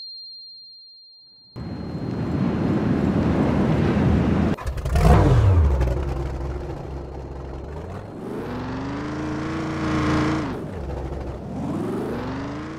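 Game off-road buggy's engine sound effect. It starts about a second and a half in after a fading tail and runs rough. About halfway through the pitch falls sharply, then it holds a steadier higher note, drops, and revs up again near the end.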